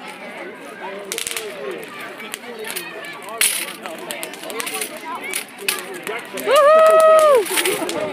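A ground fountain firework spraying sparks on the asphalt, with a few sharp crackles over people chattering. Near the end comes a loud, steady high note held for about a second, the loudest sound.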